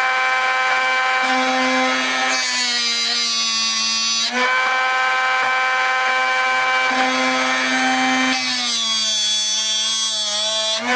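Drill Doctor 500X drill bit sharpener running, its diamond wheel grinding the tip of a masonry bit. The motor hum sags in pitch under load with a louder grinding hiss twice, as the bit is plunged against the wheel, and picks back up between strokes.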